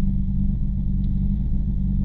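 Mitsubishi Lancer Evo IX rally car's turbocharged four-cylinder engine running at a steady pitch while the car stands still, heard from inside the cabin.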